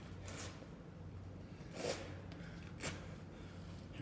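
A man breathing hard, winded at the end of a long workout: a few short, loud exhales, the strongest about two and three seconds in, over a steady low hum.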